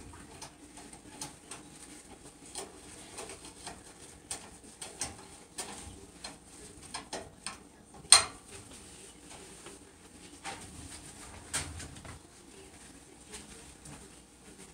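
Kitchen cleaning sounds: irregular light clicks and knocks of items on the stove and counter being handled and wiped, with one sharper knock about 8 seconds in, over a faint steady hum.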